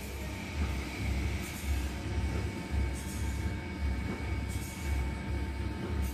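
Machinery running steadily: a low rumble that swells in a regular pulse, with a faint steady whine over it and a soft hiss that recurs about every second and a half.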